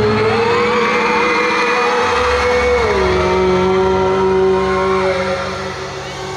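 Live pop concert sound through the PA: a singer and band holding one long note that steps down in pitch about three seconds in and ends about five seconds in, over steady bass, with fans' screams rising above it.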